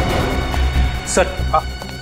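Suspenseful background score: a steady drone of held tones over a low rumble.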